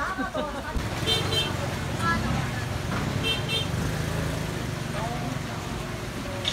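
A small motorized market cart running with a steady low engine rumble, sounding two bursts of short high beeps about two seconds apart, over the chatter of a busy fish market.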